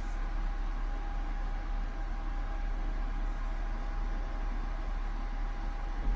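Steady fan noise with a low hum underneath and a faint steady tone above it, unchanging throughout.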